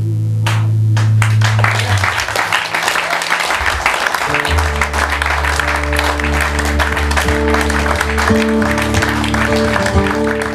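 An acoustic guitar's final chord rings out while a small audience claps. About four and a half seconds in, the guitar starts a new tune under the continuing applause.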